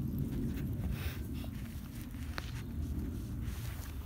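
Faint scuffs and light knocks of a person clambering up onto a brick wall, with a short sharp click about two and a half seconds in, over a steady low rumble.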